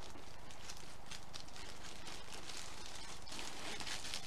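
Clear cellophane gift bag crinkling and rustling as it is gathered and handled, with many small irregular crackles.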